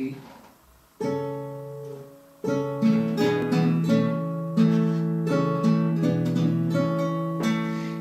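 Acoustic guitar playing a gentle introduction. A chord rings out and fades about a second in, then a steady run of chords begins about two and a half seconds in.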